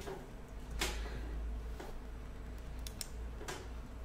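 A few faint, sharp clicks spread through a low steady hum, the first, a little under a second in, the loudest: desk-side clicking at a computer while playing chess online.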